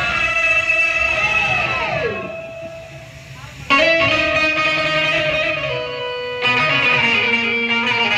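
Live instrumental music played through a PA: a sustained melodic line with gliding pitch bends fades away about two seconds in, then comes back with a sudden loud note and continues with steady held notes.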